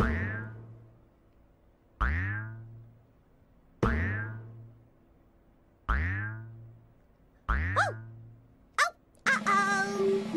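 Cartoon 'boing' bounce sound effects for a big rubber ball bouncing, five of them about two seconds apart, each starting sharply and dying away over about a second. Music starts near the end.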